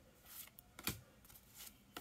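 Faint handling of Pokémon trading cards: the cards slide against one another as they are moved through a small stack in the hands, with a few soft flicks and ticks, the sharpest just under a second in.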